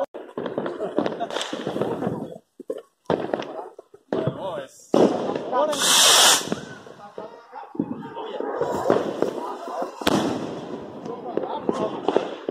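Fireworks going off: scattered cracks and pops, a loud hissing rush about halfway through as a shot climbs into the sky trailing smoke, and a single sharp crack later on.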